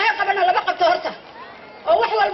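A woman's voice speaking into a microphone, pausing briefly in the second half.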